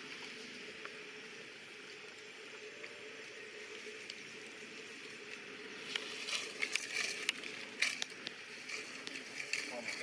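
Steady forest background, then from about six seconds in a run of sharp crackles and rustles of dry leaf litter being disturbed by movement on the forest floor.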